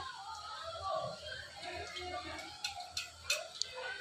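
Faint background voices, too low to make out, with a few light clicks about two-thirds of the way through.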